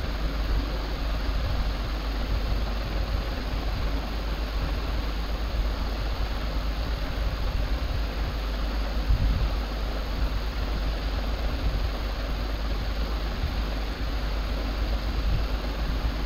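Steady background noise: an even hiss with a low hum underneath, unchanging throughout and with no distinct events.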